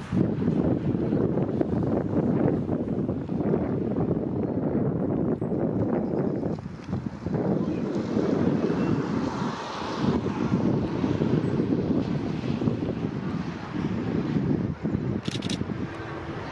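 Wind buffeting the microphone over the low running of a diesel-electric locomotive, NS 2200 class No. 2278, as it approaches along its carriages.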